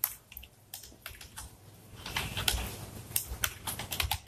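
Typing on a computer keyboard: irregular runs of keystrokes, coming faster in the second half.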